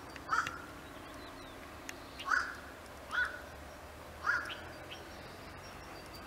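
A crow cawing four times: short calls, two close together in the middle.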